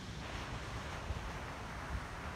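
Wind rumbling on the microphone over a steady hiss of distant surf, with two soft low thumps, about a second in and near the end.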